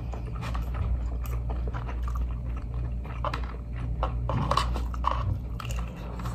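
Close-up chewing and eating noises, with plastic forks and spoons clicking and scraping in plastic takeout trays in irregular short ticks, over a steady low hum.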